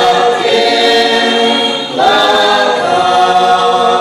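Small mixed choir of men and women singing a Konyak gospel hymn in unison without instruments, in long held notes; one phrase ends and the next begins about halfway through.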